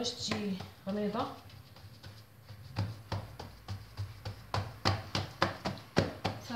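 Hands patting and pressing a sheet of stuffed bread dough flat on a baking tray: a run of quick soft slaps, several a second, starting about three seconds in.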